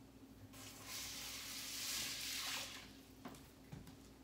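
Canned chicken broth being poured into a plastic microwave casserole dish, a steady splashing pour of about two seconds, followed by a light click and a knock near the end.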